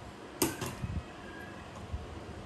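A sharp click about half a second in, followed by a few softer knocks.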